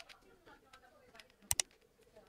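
A screwdriver working at the circuit board of an opened plastic earbud charging case: faint small ticks, then two sharp clicks close together about one and a half seconds in.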